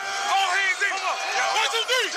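A group of football players shouting together in a tight huddle: many men's voices yelling over one another with no break.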